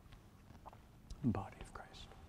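A man's voice saying a few quiet, indistinct words about a second in, falling in pitch, with a few faint clicks around it.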